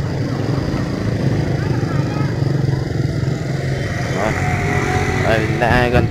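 A motorbike engine running steadily close by, with people's voices coming in from about four seconds in.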